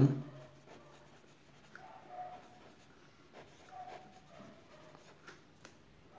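Faint scratching of a pen on paper, in short intermittent strokes, as a line of handwriting is written in a workbook.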